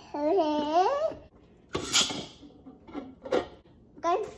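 A toddler's wordless, high-pitched babble for about a second. About two seconds in comes a short clatter of coffee beans tipped from a spoon into a burr grinder's hopper, and near the end a few light knocks.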